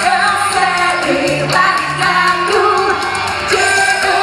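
A live rock band playing loud through a PA: electric guitars over a steady drum beat, with a woman singing.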